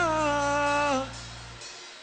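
Worship singing: the last word of a sung line held as one long note, sliding slightly down and fading out about a second in, over a low sustained chord that stops shortly after, leaving only quiet background.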